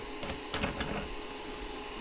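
Elegoo Mars resin printer's cooling fan running with a steady hum, with a few light clicks about half a second in as the build platform is fitted onto its arm by hand.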